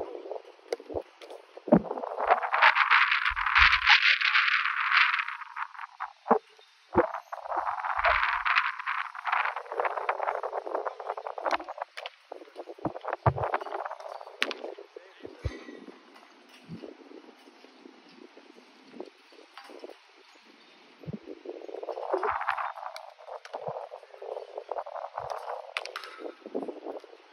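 Soccer balls being kicked and hitting a goalkeeper's gloves on an artificial pitch: a scattering of short sharp thuds. Stretches of rushing wind on the microphone come and go.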